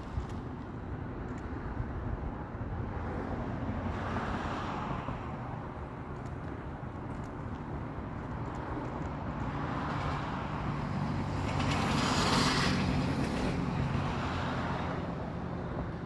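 Passing road traffic: a few vehicles swell up and fade away one after another, the loudest about twelve seconds in, over a steady low hum.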